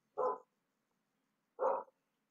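A dog barking twice, about a second and a half apart, heard faintly and thinly through a participant's video-call microphone.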